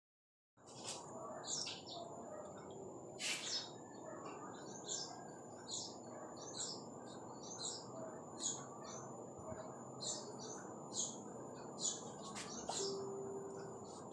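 A bird chirping over and over, short high chirps about once a second, over a steady background hiss. A sharp click about three seconds in.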